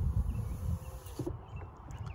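Faint whine of the BMW X3's power window motor as the side glass rises on its own after a touch on the door-handle sensor (comfort close), with low wind rumble on the microphone.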